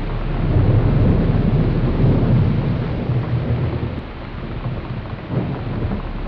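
Thunderstorm: rain falling steadily under a low roll of thunder that swells about a second in and fades away toward the end.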